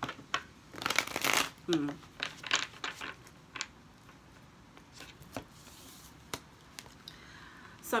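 Tarot cards being shuffled and handled: a run of quick papery rustles and flicks in the first few seconds, then a few isolated light taps. A short murmured 'hmm' comes about two seconds in.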